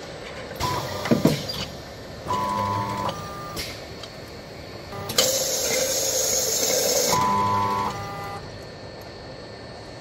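CIMEC AML can-filling monoblock cycling: gripper arms clack as they move the cans, servo motors give short steady whines twice, and a loud hiss lasting about two seconds comes midway, between the two whines.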